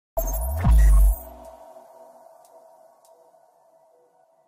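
Electronic intro sting: a sudden hit, then a deep bass boom with a falling sweep, leaving a ringing tone that fades away over the next few seconds.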